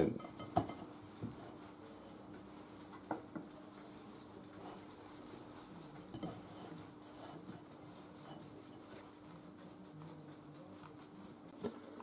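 Fingers rubbing oil around the inside of a ribbed glass baking dish: faint rubbing with a few light taps against the glass, over a low steady hum.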